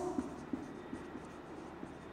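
Marker pen writing on a whiteboard: faint strokes and small taps of the tip against the board.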